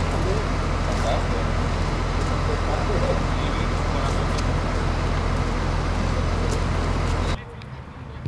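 Coach bus engine idling with a steady low hum, with people's voices in the background; the sound cuts off sharply about seven seconds in.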